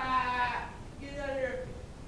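A person's voice giving two short wordless cries, the second sliding down in pitch.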